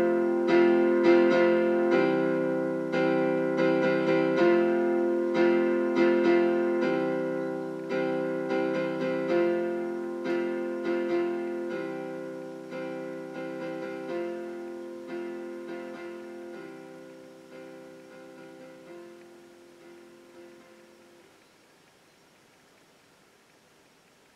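Instrumental ending of a slow song: keyboard chords struck every second or so, fading out steadily until they die away near the end, leaving only a faint hiss.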